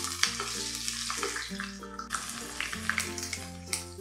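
Garlic cloves sizzling in hot oil in a pan, with a metal spoon stirring and clicking against the pan now and then. Background music with held bass notes plays under it.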